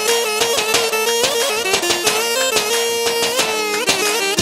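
Live Balkan Roma band dance music: a loud wind-instrument melody that bends and ornaments its notes over a steady lower held note.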